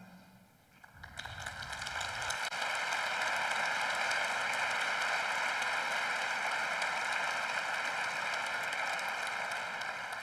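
Audience applauding: the clapping starts about a second in, swells over the next second, holds steady and eases off near the end.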